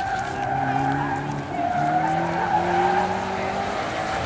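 Subaru Impreza wagon with a swapped-in 2005 STI turbocharged flat-four running hard through an autocross course. Its note steps up about halfway through and keeps climbing, with tyre squeal under the engine as it corners.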